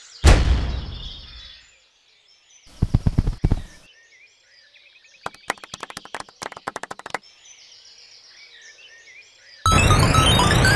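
An explosion sound effect: a sudden loud bang with a low rumble dying away over about a second and a half. A cluster of heavy thuds follows about three seconds in, then a rapid run of sharp knocks from about five to seven seconds, over faint birdsong. Loud music starts abruptly near the end.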